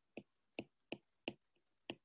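Stylus tip tapping on a tablet's glass screen while handwriting: five faint, sharp clicks at uneven spacing, roughly two a second.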